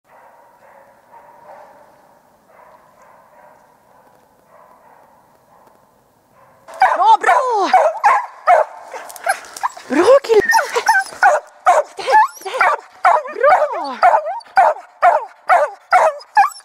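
Smålandsstövare hound baying up a tree at a treed pine marten (ståndskall), in rapid, loud yelping barks that rise and fall in pitch. The barking starts suddenly about seven seconds in, after a faint opening.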